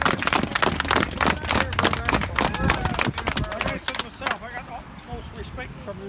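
People talking outdoors, loud for about the first four seconds, then quieter voices.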